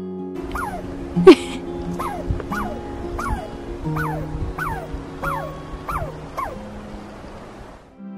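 A squirrel calling over background music: a run of about ten short chirps, each falling in pitch, about two a second, with one sharp, loud sound about a second in.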